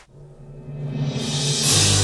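Symphony orchestra starting a piece: low notes come in quietly and build, swelling into a loud full-orchestra entry near the end.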